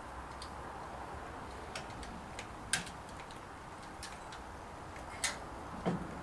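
Scattered sharp metallic clicks of a large Allen wrench working a bolt as the secondary spindle's mount is tightened on the mill head, about seven in all, the loudest near three and five seconds in, over a faint low hum.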